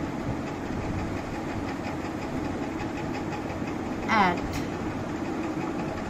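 A steady low mechanical hum runs throughout. One short spoken word comes about four seconds in.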